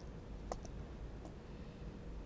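Small beads clicking against each other on a strand as they are threaded: one sharp click about half a second in, followed by a couple of fainter ones, over a low steady hum.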